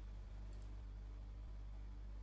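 Quiet pause filled by a steady low electrical hum and faint hiss on a computer microphone, with a faint click about halfway through as the presentation slide is advanced.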